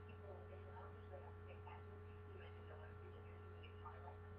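Steady low electrical hum at near silence, with a faint, muffled voice leaking from the earpiece of a mobile phone held to the ear.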